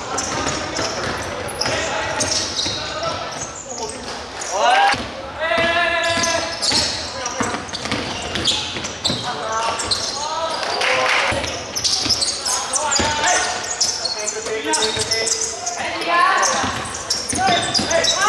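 A basketball bouncing on a sports-hall court during live play, with repeated sharp strikes, mixed with shouting voices in the large hall.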